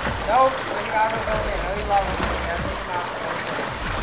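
Indistinct calling voices over water splashing and sloshing as people wade into a swimming pool.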